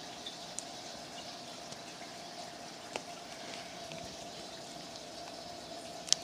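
Faint steady background hum and hiss, with a few light ticks, the clearest about three seconds in.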